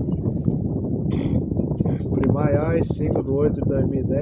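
A high-pitched cartoon voice speaking from an animated episode playing on a laptop, starting about two seconds in, over a steady low rumble.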